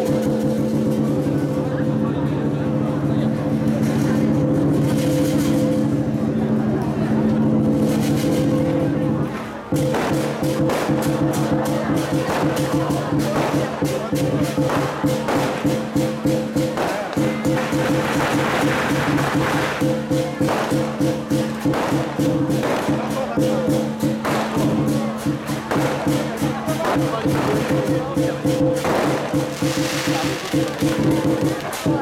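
Lion-dance percussion of drum, cymbals and gong playing continuously in fast, dense strikes over a steady ringing tone. It breaks off briefly about ten seconds in, then resumes with the strikes coming in a pulsing beat.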